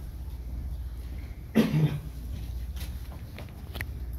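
A single cough about one and a half seconds in, over a steady low hum of room noise, followed by a couple of faint clicks.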